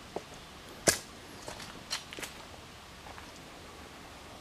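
Footsteps on a dirt and leaf-litter path, a few light crunches and ticks, with one sharp click about a second in.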